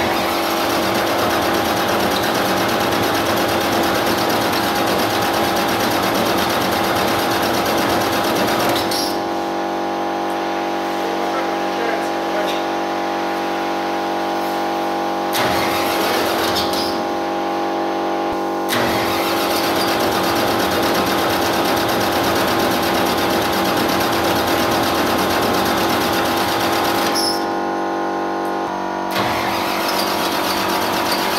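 An engine running steadily with a constant-pitched drone. A hissier noise drops out and cuts back in several times.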